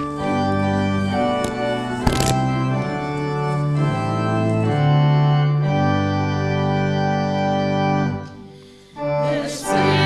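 Church organ playing held chords as the introduction to a congregational song. It dies away near the end, and the congregation begins to sing. There is a brief knock about two seconds in.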